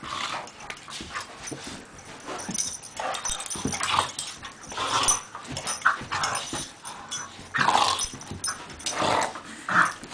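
Two dogs, a pit bull and a beagle mix, making play noises in irregular bursts about once a second as they wrestle and mouth at each other's faces.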